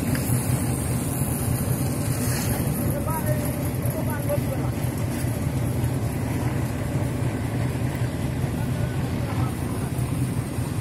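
A steady low engine-like drone runs throughout without letting up, with faint voices in the background.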